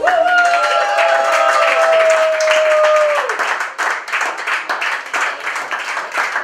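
A small group clapping and applauding at a table after the music stops, the clapping growing more distinct about halfway through. Over the first three seconds a long held high note rises in, then slowly sinks and cuts off.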